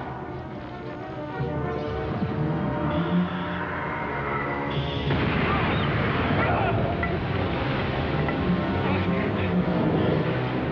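Dramatic film score with deep rumbling effects beneath it, growing louder about halfway through.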